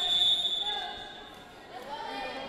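A referee's whistle blows once, a single high steady tone of about a second that starts sharply and fades, over players' voices in the gym.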